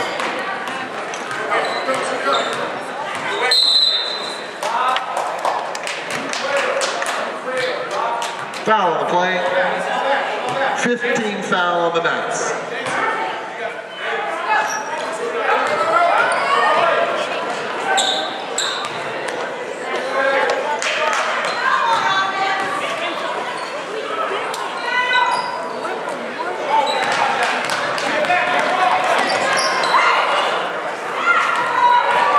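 Sounds of a basketball game in a gym: the ball bouncing on the hardwood court, with many short sharp clicks, and players and spectators calling out, all echoing in the large hall.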